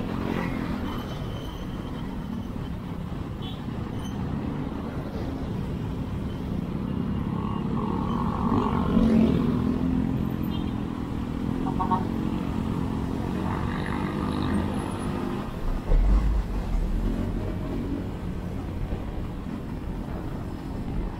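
Motorcycle engine running and road noise heard from on board while riding in traffic, with the engine note rising and falling. Wind buffets the microphone briefly near the end.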